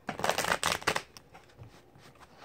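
A deck of affirmation cards being shuffled by hand: a quick flutter of card edges lasting about a second, followed by a single soft click.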